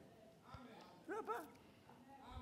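Near silence, broken just over a second in by two faint, quick yelps in rapid succession, each rising and falling in pitch.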